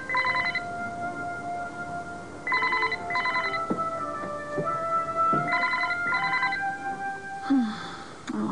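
A telephone ringing in the British double-ring pattern: three pairs of short trilling rings, about three seconds apart, over soft background music with long held notes.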